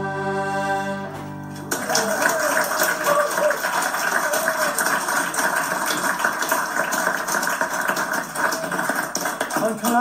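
Accordion, fiddle and keyboard holding the final chord of a set of Irish reels, dying away after about a second and a half; then an audience clapping steadily, heard through a television speaker.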